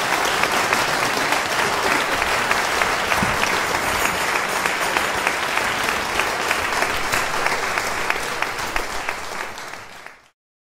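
Audience applauding: dense, steady clapping that fades out near the end.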